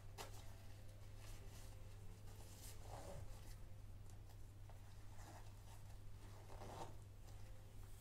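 Small zipper on a doll-sized fabric backpack being drawn closed in short, faint rasps and clicks, with the bag's fabric handled in between.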